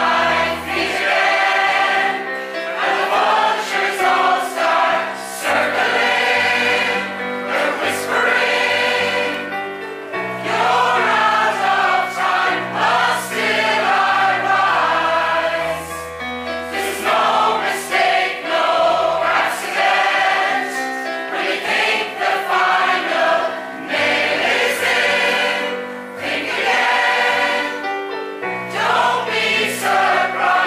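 Mixed choir of men and women singing a choral pop arrangement, over an accompaniment of sustained low bass notes that change every few seconds.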